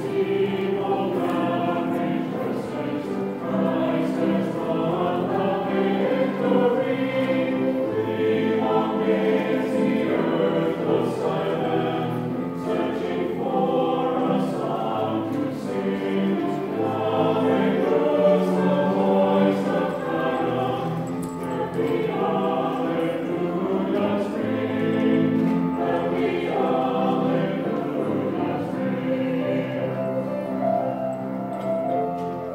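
A mixed choir of men's and women's voices singing together in several parts, continuous throughout.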